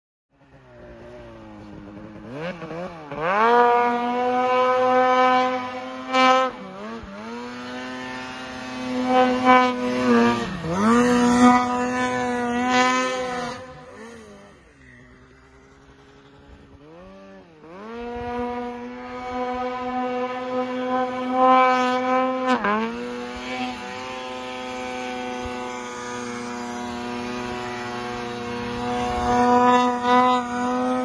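Polaris snowmobile engine revving hard and backing off again and again, its pitch rising and falling with each burst of throttle. About midway it drops to a quieter low-rev lull, then climbs again and holds high and steady toward the end.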